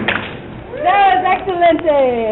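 Music cuts off abruptly. Then one or more women whoop, their voices falling in pitch, with a sharp snap near the end.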